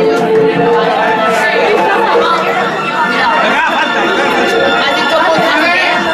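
Indistinct chatter of many voices talking over one another, loud and continuous.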